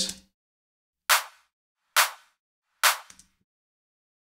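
Electronic clap sample played solo, three hits a little under a second apart, each a short bright crack that dies away quickly. It is the crunchy, high layer of a two-layer trance clap, with almost no low end.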